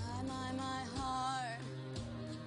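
Young female pop singer holding a sung note with vibrato, which bends down and ends about one and a half seconds in, over a recorded backing track with a steady bass line.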